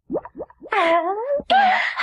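Anime soundtrack voice sounds: two quick rising yelps, then longer, wavering vocal cries.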